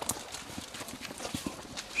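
A series of irregular light knocks, a few each second.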